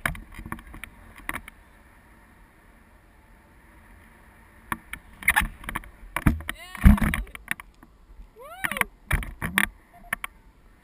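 Wind rushing over an action camera's microphone in flight under a paraglider: a steady hiss at first, then loud gusting bumps on the microphone from about five seconds in. Twice, a short wordless voice sound rises and falls in pitch.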